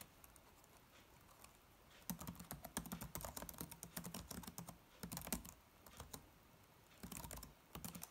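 Typing on a computer keyboard: a quick run of keystrokes starting about two seconds in and lasting about three seconds, a few more keys, then a second shorter run near the end.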